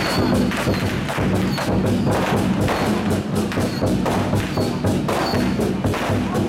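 A troupe of Chinese war drums (zhangu) beaten hard with sticks in a fast, dense, continuous rhythm, loud and driving throughout.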